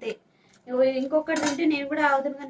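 A person talking, with a single sharp clink of a stainless steel plate about halfway through.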